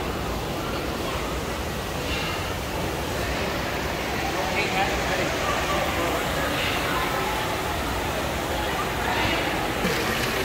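Indistinct chatter of many visitors in a busy exhibit hall over a steady rushing background noise.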